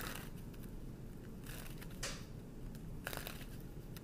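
A tarot deck being handled and shuffled: about four short, crisp swishes and flicks of cards, the strongest about two seconds in, over a low steady background hum.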